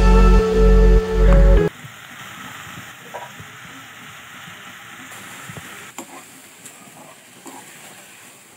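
Background music with a steady beat that cuts off abruptly about two seconds in, leaving the steady sizzle of sliced onions, green chillies and curry leaves frying in a pan as leafy greens are tipped in and stirred, with an occasional click of the spoon against the pan.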